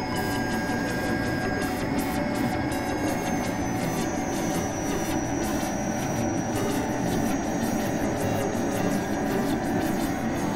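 Experimental electronic drone music made on synthesizers: a dense, steady rumbling noise drone with thin high held tones over it, one of which steps up in pitch about three seconds in, and a fast crackle in the top end.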